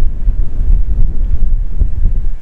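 Wind buffeting a phone's microphone: a loud, gusty low rumble.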